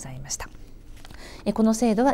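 A woman speaking Japanese in a lecture, with a short pause in the middle before she speaks again.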